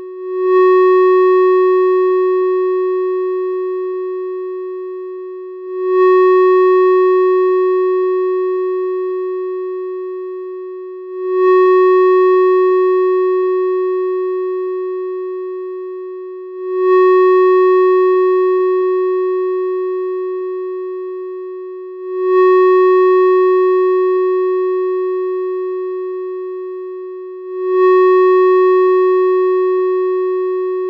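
A single sustained electronic tone held at one pitch, swelling up sharply about every five and a half seconds and slowly fading between swells, in an avant-garde drone piece.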